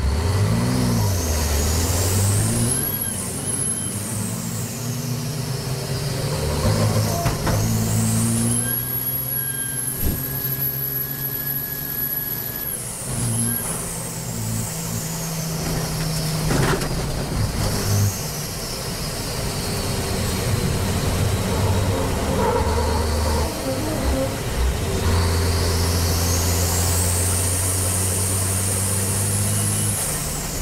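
Racing truck's engine heard from inside the cab under hard load. The engine note steps up and down through the gears, with a high whistle that rises and falls and is held steady for a few seconds near the middle, plus a couple of sharp knocks.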